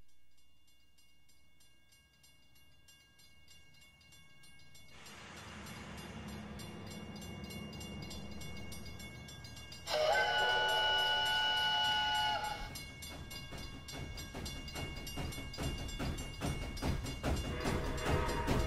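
Steam locomotive sound effects on the soundtrack: a rushing rumble swells up, then a loud chime steam whistle sounds for about three seconds, followed by a fast rhythmic chuffing that builds toward the end as music begins.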